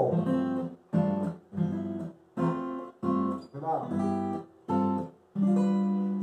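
Acoustic guitar playing about eight short chords one after another, each damped before the next: a G chord held while the top note steps up the C major scale.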